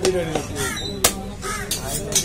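Crows cawing repeatedly, with a single sharp chop of a cleaver on the wooden chopping block about a second in.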